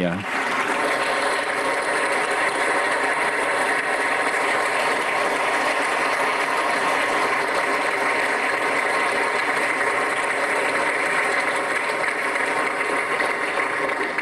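Large audience of delegates applauding steadily in a big conference hall: a long, even round of clapping.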